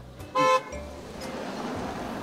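A car horn gives one short, single-pitched toot about half a second in, followed by the steady noise of passing traffic.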